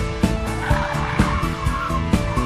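Honda Jazz's tyres squealing for about half a second midway through as the car slides around the cones, over music with a steady beat.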